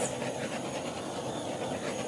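Handheld torch flame hissing steadily as it is passed over wet acrylic pour paint to pop air bubbles on the surface.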